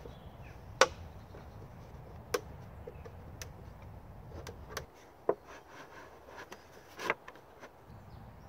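Handling noise: a few light knocks and clicks as a plastic milk carton is fitted onto a split wooden stake, over a low background rumble that drops away about five seconds in.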